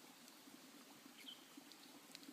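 Near silence, with a few faint clicks and light scratching of hands working at a small cigar tube to open it.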